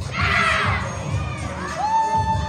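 A group of young voices shouting together in a loud burst, then near the end one voice rising into a long, held shout.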